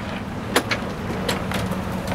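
A couple of sharp clicks as a trailer's rear hatch panel and its latch are handled, over a steady low hum.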